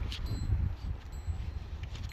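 Wind buffeting the microphone, a steady low rumble, with a few faint high ringing tones above it.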